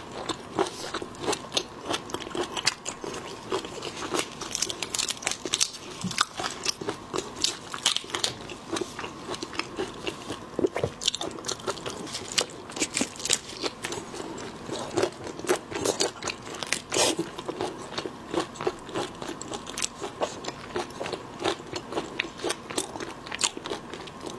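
Close-miked eating of soy-sauce-marinated raw shrimp: wet, irregular chewing and biting, with a constant run of small clicks and crackles.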